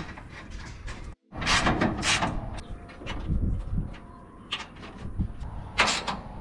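Metal radiator fan shroud being handled into place and bolted down: a few sharp scrapes, knocks and rattles of sheet metal, with a brief cut in the sound about a second in.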